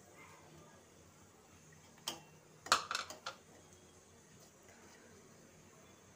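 A steel spoon stirring in a stainless steel pot of simmering milk and clinking against the metal: one knock about two seconds in, then a quick run of clinks about a second later.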